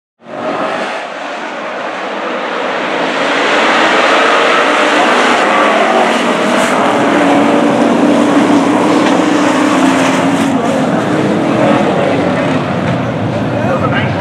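Pack of race trucks' engines running at speed on an oval track: a loud, continuous engine drone whose pitches waver as the trucks pass. It cuts in abruptly and builds over the first few seconds.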